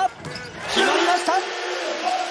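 Home arena crowd cheering as a three-pointer goes in. The cheer rises suddenly about three-quarters of a second in and holds loud.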